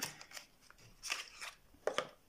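Small cosmetic product packaging handled by hand: several short rustles and clicks, the longest about a second in.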